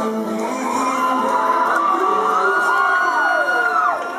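Live pop song with band backing: singers' voices in a winding vocal run that climbs to a long high held note, which glides down and stops just before the end, with audience whoops.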